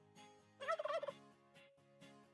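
A turkey gobbling once, a rapid warbling call about half a second long, over quiet plucked-guitar background music.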